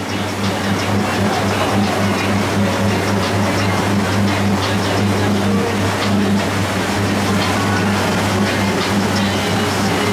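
A tour boat's engine running steadily under way, a constant low drone with wind and water noise over it, while music plays.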